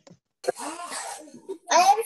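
A child coughing over a video-call connection, the noisy cough lasting about a second. A child's voice then starts to answer near the end.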